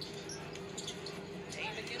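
Televised NBA basketball game playing faintly: a commentator's voice over arena crowd noise, with a basketball bouncing on the hardwood court.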